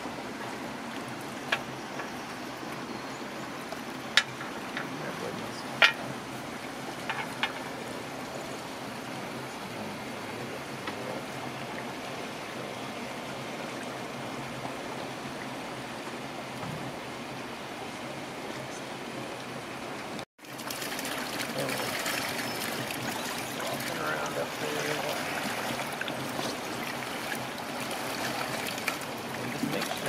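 Steady rush of flowing water in a hatchery pond channel, with a few sharp clicks in the first several seconds. After an abrupt cut about twenty seconds in, the water sound is louder, with faint voices under it.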